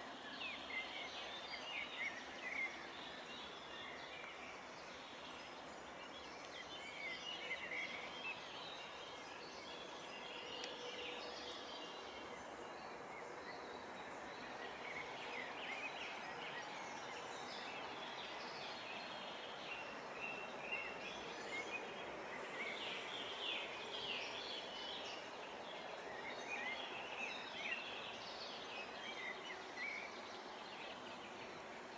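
Faint outdoor ambience: several birds chirping and singing on and off over a steady background hiss.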